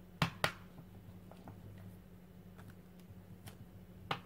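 Light taps and clicks of a wooden-mounted rubber stamp being handled and pressed onto a paper journal page on a tabletop: two sharp taps just after the start, then faint scattered ticks. A steady low hum runs underneath.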